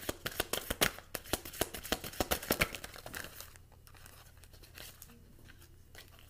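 Tarot cards being shuffled by hand: a quick run of card flicks and slaps for about three seconds, then it stops.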